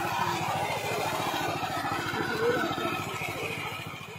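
Small engine of a walk-behind hand reaper running steadily as the machine drives along, with a fast, even firing beat; it grows slightly quieter near the end.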